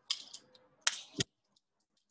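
Metal tree-climbing hardware being handled and fitted onto a rope: a few light clinks, then two sharp metallic clicks about a second in.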